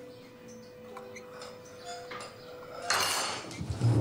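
Metal spoons clinking lightly against cereal bowls, a few small clinks spread out. About three seconds in comes a louder, longer scrape, a chair pushed back on a wooden floor, followed by a couple of low knocks near the end.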